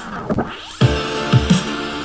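Drum and bass intro playing from FL Studio: a pitch-bending, stuttering glide from Gross Beat time-effect automation, then kick drums and sustained pad chords.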